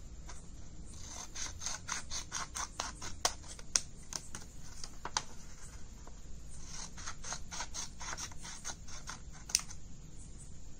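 Scissors cutting paper along a fold: two runs of quick snips, with a pause of about a second and a half between them.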